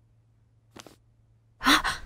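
A brief faint paper crinkle as a sheet of paper is folded, then near the end a woman's loud, sharp gasp.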